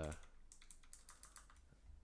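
A short, quick run of light key clicks from typing on a computer keyboard, about half a second in, followed by a faint low hum.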